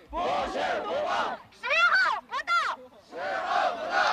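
Slogans shouted in Chinese: a woman's voice through a handheld megaphone alternates with a crowd of protesters chanting the lines back in unison. The shouting comes in short, loud phrases with brief gaps between them.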